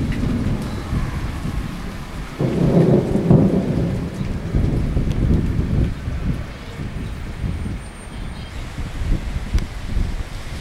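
Thunder rumbling during a thunderstorm, swelling loudest a couple of seconds in and rolling on for several seconds before easing, over a steady hiss of rain.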